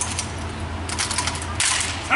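Drill squad's rifles being spun, caught and slapped together: a scatter of sharp clacks of hands on rifle stocks, a cluster about a second in, then a louder, longer clatter near the end as the rifles are caught together.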